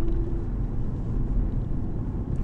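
Steady low rumble of a car heard from inside the cabin on the move. A steady held tone stops about half a second in.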